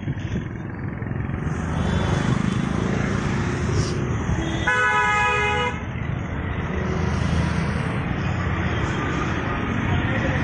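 Road traffic noise with a vehicle horn sounding once, a steady tone about a second long, about five seconds in.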